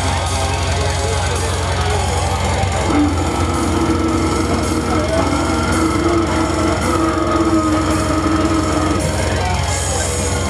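Live slam death metal played loud: heavily distorted, down-tuned guitar over a dense low rumble, with a long note held from about three seconds in to about nine.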